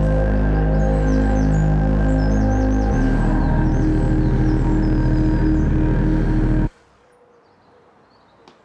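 Soundtrack music of sustained low chords, changing chord about three seconds in, then cutting off abruptly near the end, leaving a quiet background.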